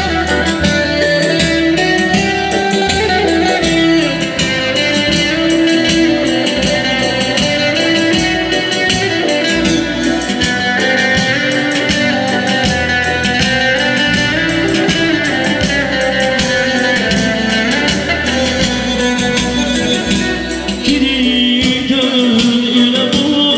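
Live Azerbaijani wedding band playing an instrumental passage: electric guitar carries the melody over a steady hand-drum beat with keyboard accompaniment.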